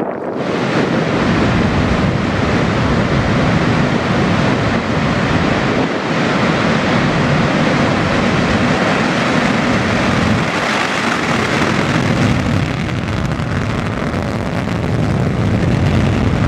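Long March-2D rocket's first-stage engines at liftoff and during the climb: a loud, steady rush of deep engine noise that sets in suddenly at the start and holds without a break. The first stage is a cluster of four YF-20C engines (the YF-21C) burning hypergolic propellants.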